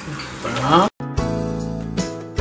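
A voice trails off, then after a brief cut to silence about a second in, background music starts, led by a plucked acoustic guitar.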